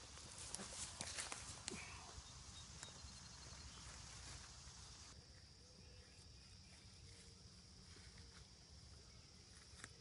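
Near silence: faint outdoor ambience, with a few soft clicks and rustles in the first two seconds.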